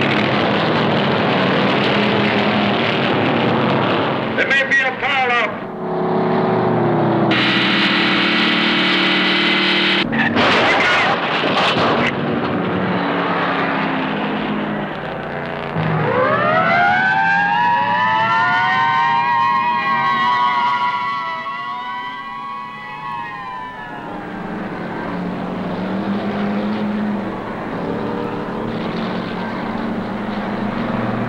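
Stock car engines running at racing speed. Then, from about halfway through, a fire engine siren wails, rising and falling in pitch for several seconds before dying away.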